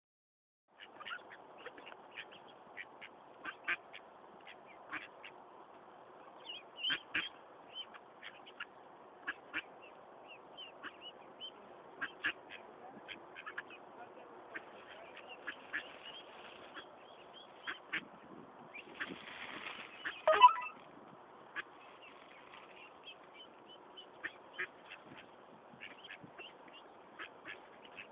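Mallards quacking and calling: a steady run of short calls, several a second, with a louder, longer burst of calling about two-thirds of the way through.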